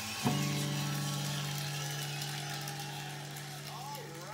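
Steel-string acoustic guitar strummed once about a quarter second in, the chord left to ring and slowly fade.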